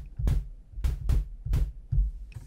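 Synthesized kick drum from the Retrologue 2 software synth, built from sine-wave oscillators with a layer of pink noise. It is played about five times in quick, uneven succession, each hit a short low thump with a brief noisy crack on top.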